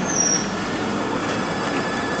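A tram rolling past on the next track: a brief high-pitched wheel squeal just after the start, then steady rolling noise from the wheels on the rails.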